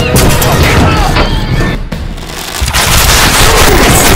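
Battle sound effects over a music score: men shouting and heavy booming crashes, with a brief lull about two seconds in before the noise returns.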